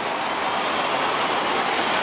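Large stadium crowd cheering steadily as a goal is kicked by the home side.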